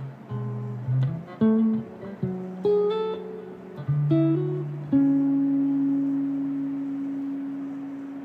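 Electric guitar improvising: a quick run of single picked notes and short chords, then a note struck about five seconds in that is held and rings on, slowly fading.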